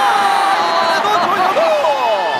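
A man's long held exclamation, then a shorter falling one, over stadium crowd noise: a football commentator's cry of surprise at a goalkeeper's diving save.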